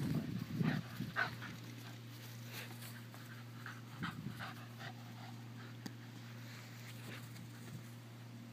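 A cocker spaniel panting close by in quick, irregular breaths, loudest in the first second or so and fainter after that.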